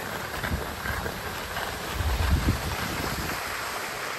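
Skis sliding over groomed snow, a steady hiss, with wind rushing on the microphone; the low buffeting grows stronger for a moment about two seconds in.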